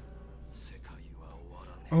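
Faint speech: a line of anime dialogue spoken quietly, over a steady low hum. A man's loud "oh" comes in at the very end.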